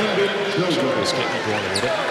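Men's commentary voice over the arena sound of a basketball game in play, with the ball bouncing on the hardwood court.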